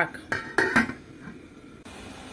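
Metal pot lid clanking onto a cooking pot: a few quick clatters within about half a second as the pot is covered.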